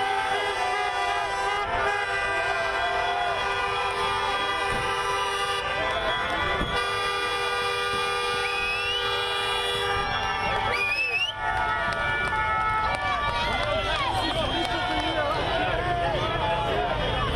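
Many car horns sounding together in long, steady blasts, with people shouting over them; the horns thin out after about ten seconds, leaving mostly voices.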